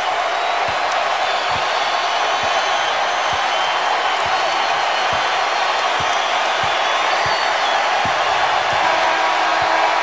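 Basketball arena crowd cheering steadily through the final seconds of a game, with a ball dribbled on the hardwood about once a second. Near the end a steady horn sounds as the game clock runs out.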